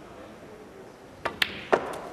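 Snooker shot: a faint click from the cue tip, then two sharp clacks of the balls about a third of a second apart, a little past the middle, as a red is potted.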